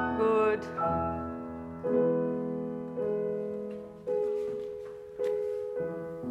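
Grand piano playing slow chords, a new one struck about every second, each left to ring and fade before the next.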